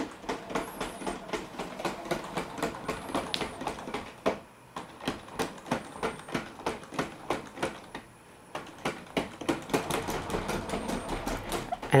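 Weilan BabyAlpha quadruped robot dog walking under joystick control: its leg motors and feet make a rapid run of small clicks and taps, several a second, stopping briefly twice.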